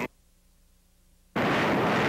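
Near silence for just over a second, then a loud, steady rushing noise cuts in abruptly: the jet engines of a B-45 bomber.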